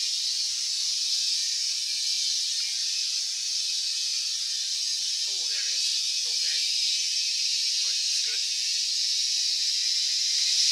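Carbon dioxide hissing steadily as it flows from a CO2 cylinder through its regulator and hose into a soda keg.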